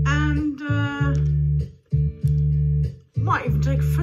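Band backing track playing an instrumental intro: bass guitar and guitar in a steady repeated low rhythm, with a brief vocal sound in the first second.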